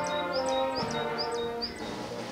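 An approaching marching brass band playing held chords. Over it a small bird chirps repeatedly, about five short rising chirps evenly spaced.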